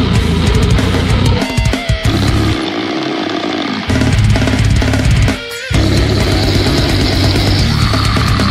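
Slamming brutal death metal track with heavy down-tuned guitars, bass and drums. The heavy low end breaks off briefly about one and a half seconds in, drops away for about a second around three seconds, and stops again for a moment near five and a half seconds before the full band comes back in.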